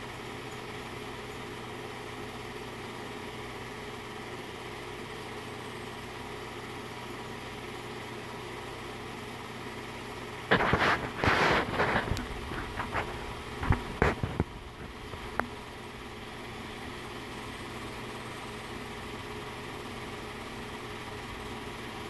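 Steady hum of a running film projector's motor and fan. About halfway through come several seconds of loud clattering and knocks, then the hum carries on alone.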